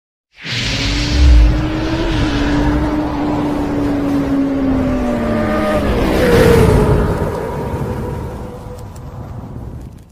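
Motorcycle engine sound effect in an animated intro: a steady engine note with a low boom about a second in, the note dropping in pitch around six seconds in as the sound swells, then fading out.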